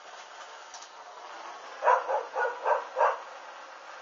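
A dog barking five times in quick succession, starting about two seconds in, over a steady background hiss.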